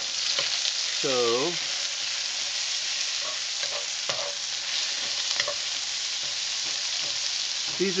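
Sliced brown onions sizzling in hot oil in a wok, stirred with a wooden spatula that scrapes lightly against the pan now and then.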